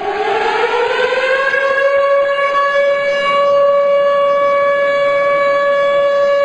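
Siren sounding for the nationwide 10 November moment of silence in memory of Atatürk. It starts suddenly, rises in pitch over about the first second and a half, then holds one steady loud note.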